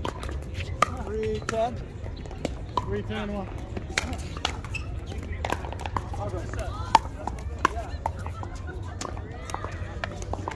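Pickleball paddles striking a plastic pickleball during a doubles rally: a run of sharp pops, about one every half second to second, the loudest about seven seconds in.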